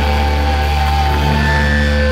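Live hardcore punk band's amplified electric guitars and bass ringing loud and steady on sustained notes, with no drum hits.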